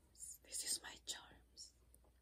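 A woman whispering softly close to the microphone, in a few short whispered bursts in the first half.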